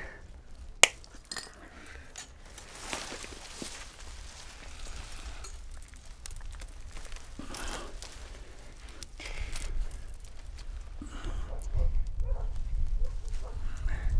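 Wire being wrapped and pulled tight around a bundle of cut twigs to bind a broom: twigs rustling and creaking, wire scraping and clinking. There is one sharp click about a second in.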